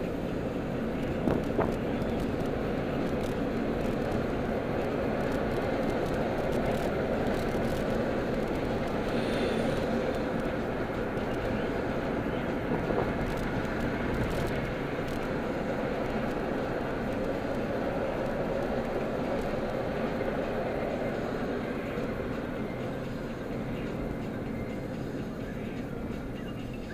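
Steady road and engine noise of a car driving along, heard from inside its cabin, easing off slightly near the end.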